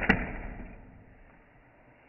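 Fingerboard landing with one sharp clack just after the start, then its wheels rolling with a noise that fades away over about a second and a half.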